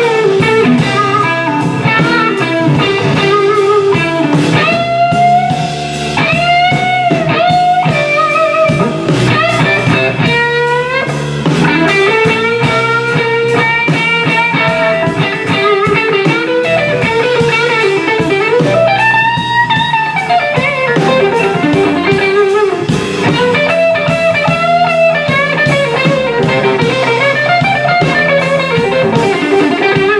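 Electric guitar solo in a live blues band, with bass and drums beneath it. The lead line bends notes upward and holds them, several times in the first third and again about two-thirds of the way through.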